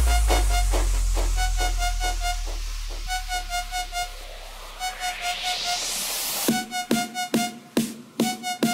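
Electronic club dance music in a breakdown. The kick drum drops out under a long, slowly fading deep bass boom while a repeating high synth riff carries on. A rising noise sweep builds, and the fast drum beat crashes back in about six and a half seconds in.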